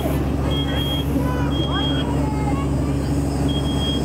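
Smoke alarm sounding in short, high-pitched beeps of about half a second, set off by smoke from a room fire, over a steady low engine drone.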